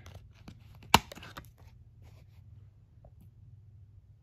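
A disc being popped off the hub of a steelbook case's plastic tray: one sharp click about a second in, with a few smaller clicks and rustles of handling around it.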